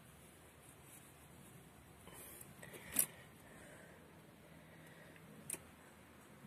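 Mostly quiet, with two short sharp clicks: a louder one about halfway through and a softer one near the end.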